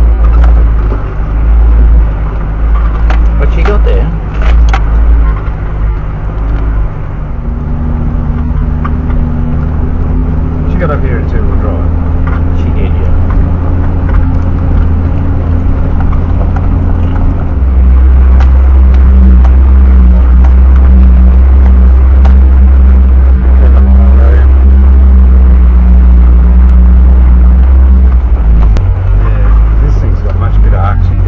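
Four-wheel-drive vehicle's engine droning under load as it crawls up a steep rocky track at walking pace, heard from inside the cabin. The drone shifts to a new steady pitch about seven seconds in and again about eighteen seconds in, as the engine speed changes on the climb.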